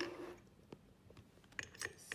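A few faint, sharp metallic clicks of a precision screwdriver on the small screws of a hard disk's platter clamp: one about three quarters of a second in, and a short cluster near the end.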